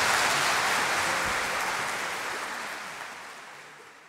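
Audience applause, a dense even clapping that fades out steadily toward the end.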